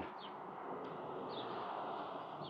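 Street ambience: a steady hiss of background noise with a few faint, short bird chirps.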